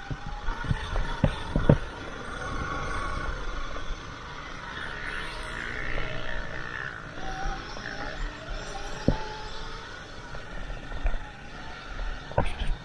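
Sur-Ron electric dirt bike riding over a dirt motocross track: a faint motor whine that rises and falls with the throttle over a steady rumble of the ride, with a few sharp knocks from the bike hitting bumps, two near the start and one about nine seconds in.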